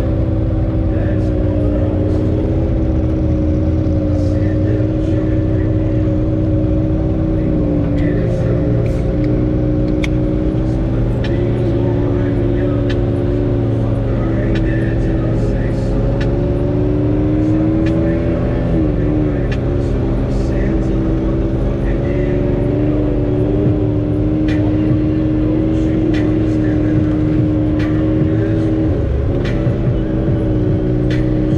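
Can-Am Maverick X3's turbocharged three-cylinder engine running at a steady, moderate speed, heard from inside the open cab as it drives along a dirt trail. Its pitch dips briefly a few times as the throttle eases, with scattered light rattles and clicks from the chassis.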